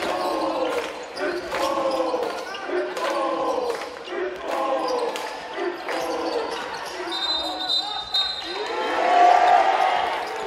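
A basketball dribbled on a hardwood gym floor, with sharp bounces that echo in the hall. Under it, voices chant in rhythm, swelling about once a second, and grow loudest near the end as a shot goes up.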